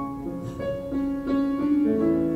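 Piano playing an instrumental passage between sung lines, notes and chords struck one after another and left to ring.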